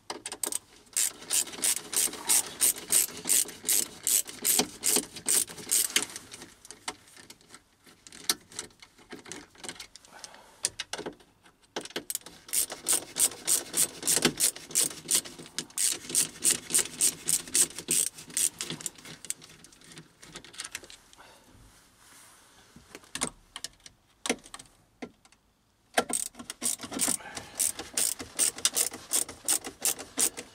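Ratcheting Phillips bit screwdriver clicking rapidly, several clicks a second, as it backs out the screws holding a car stereo; the clicking comes in three runs with short pauses between.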